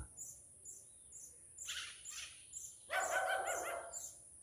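Birds calling: a short raspy call near the middle and a longer, louder call in the last second, over a faint high-pitched insect trill that pulses about four times a second.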